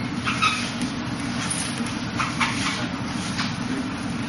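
Steady low background hum, with a few brief soft rustles about half a second in, around two and a half seconds in and near the end, as from clothing and hands moving during slow martial-arts form work.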